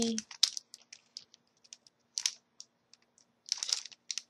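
A small packet of scrapbooking brads being handled and turned over in the hands: scattered light clicks and crinkles of the packaging, with a longer rustle about two seconds in and another near the end.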